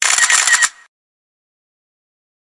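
Camera shutter sound effect: a quick burst of rapid shutter clicks lasting under a second at the start, then silence.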